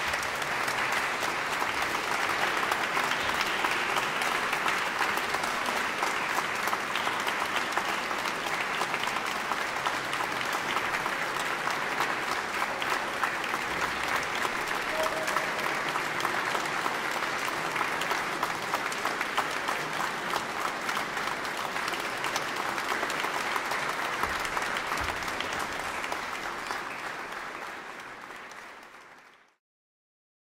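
Audience applause, dense and steady, fading over the last couple of seconds and then cutting off.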